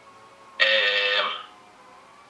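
One drawn-out vocal sound from a man, held at a steady pitch for just under a second, like a thinking "hmm" or a held vowel, over quiet room tone.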